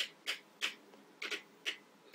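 Plastic swivel of a Power City toy construction crane clicking as its cab is turned by hand on the base, about six sharp clicks at uneven spacing.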